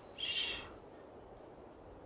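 A man's short "shh" hush, one half-second hiss just after the start, over faint outdoor background noise.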